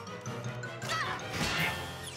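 Cartoon crash sound effect about one and a half seconds in, as the cat is hurled into junk, over background music.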